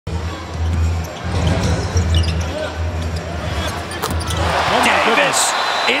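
Live NBA game sound: a basketball dribbled on the hardwood over a low arena rumble, then the crowd swells into cheering as a three-pointer drops, with a commentator's excited call beginning near the end.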